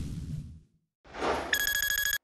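Animated logo sound effect: a short rush of noise swells up, then a bright ringing chime-like tone with a fast flutter sounds for about half a second and cuts off abruptly.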